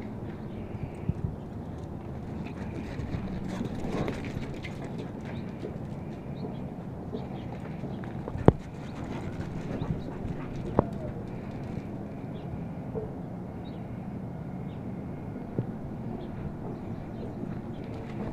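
Dogs running and scuffling on artificial turf, their paws patting in an uneven rhythm, over a steady low hum. Two sharp clicks stand out about halfway through.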